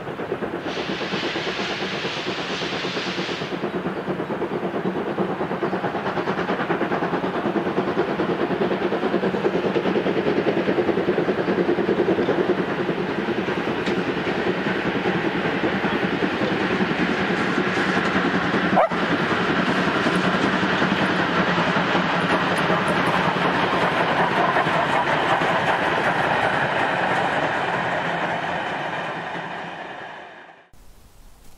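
Steam locomotive working a passenger train past, its exhaust mixed with the rumble and clatter of the coaches on the rails. The sound builds as it approaches and fades away at the end. Near the start there is a high hiss lasting about three seconds, and about two-thirds of the way through a single sharp click.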